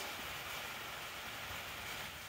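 Steady faint background hiss with no distinct sound events.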